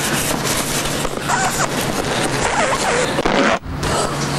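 Air hissing steadily out of a punctured inflatable blow-up doll, with a low steady hum underneath and a few faint squeaks of the vinyl. The hiss briefly drops out about three and a half seconds in.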